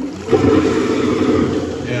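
Jacob Delafon chain-pull high-level toilet cistern flushing, loud water rushing out through the flush pipe, starting about a third of a second in. The cistern's outlet joint leaks only while it flushes.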